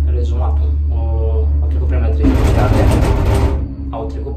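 Gondola lift cabin running along its cable with a steady low rumble. About two seconds in, a loud rushing rattle lasts over a second, then drops off sharply as the cabin passes a lift tower's rollers.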